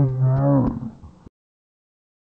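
A man's drawn-out, low cry, wavering in pitch for under a second, then the sound cuts off suddenly to dead silence.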